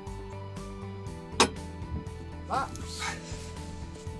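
One sharp click about a second and a half in, from the ratchet of a campervan rear seat-bed backrest catching as it is lifted, over steady background music.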